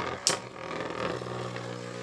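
Two metal Beyblade spinning tops, Crash Escolpio 125JB and Berserker Behemoth, spin in a stadium with a steady whirring hum. There is a sharp click shortly after the start as they knock.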